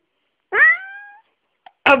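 A cat's single meow, about two-thirds of a second long, rising in pitch and then levelling off. It sounds like the Ukrainian word 'мав' ('had').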